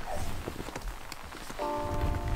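Rustling and scattered soft knocks from a camera being handled and swung around, then a held music chord coming in about one and a half seconds in.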